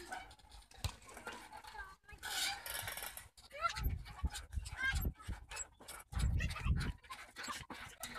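Knocks, rattles and wind rumble from a phone microphone moving with a playground swing, with faint voices and breathing.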